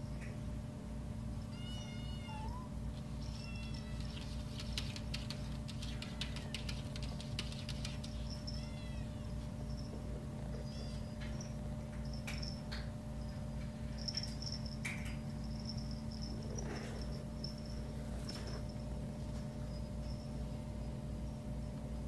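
Young kittens giving short, high-pitched mews every few seconds, over a steady low hum, with scattered light clicks in between.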